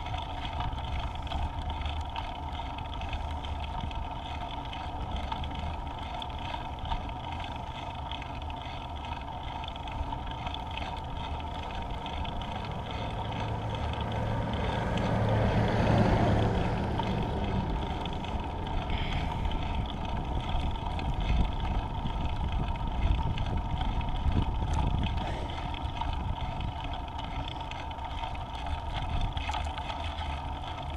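Wind over the microphone and steady rolling noise of a Space Scooter step scooter in motion, with a louder rush that swells and fades about halfway through.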